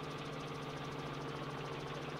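Helicopter's engine and rotor running, a steady low hum heard from inside the cabin on the live feed.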